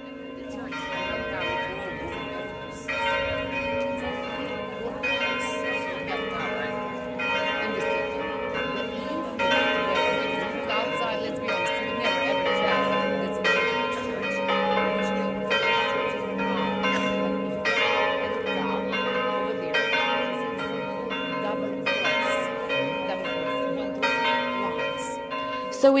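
Several church bells pealing, struck again and again in quick succession over the steady, lingering hum of their ringing.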